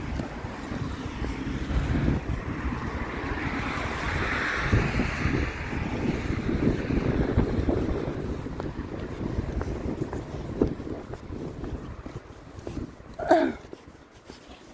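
Wind buffeting a handheld phone's microphone outdoors: a continuous rumbling rush that swells about four seconds in and eases off near the end. A short voice-like sound comes just before it ends.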